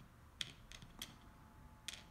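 Faint, short clicks of small balls being set into the holes of a wooden Chinese checkers board, about four taps spread over two seconds.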